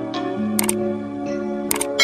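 Soft sustained background music. Over it, two short clusters of sharp, shutter-like click sound effects sound, about half a second in and again near the end: the mouse-click sound of an animated subscribe button.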